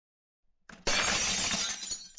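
Glass-shattering sound effect: a brief faint crackle, then, almost a second in, a sudden loud crash of breaking glass with a dense spray of clinking shards.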